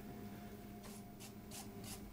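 Wet clay rubbing under the hands on a tall jar turning on a potter's wheel: a soft swish that repeats about three times a second, starting about a second in, over a steady low hum.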